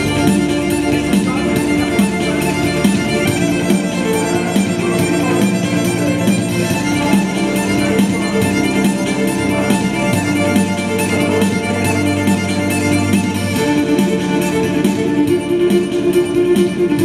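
Electric violin playing a bowed melody over an electronic backing track with a steady beat and a bass line that drops out for a few seconds and comes back.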